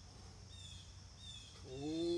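A man's held, strained groan starts near the end as he pushes through a ring dip. Behind it, high falling chirps from a wild bird or insect repeat about every half second.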